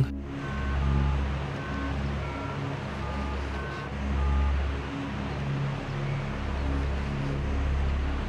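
Keypad tones of a Nokia mobile phone as a number is dialled: a run of short two-note beeps, a few a second, through the first half or so. Under them is a low rumble that swells and fades.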